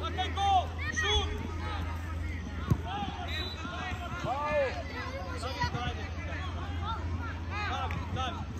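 Children shouting and calling out across an outdoor football pitch during play, with a single sharp thud of a football being kicked a little under three seconds in.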